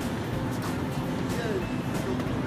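Busy supermarket background: distant voices and in-store music over a steady low rumble.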